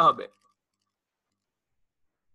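A man's voice breaks off just after the start, followed by dead silence.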